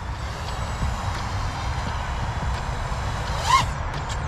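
Diatone Roma F5 V2 five-inch FPV freestyle quadcopter flying at a distance, its motors and propellers a faint steady whine over a low rumble, with a brief rising-and-falling rev near the end.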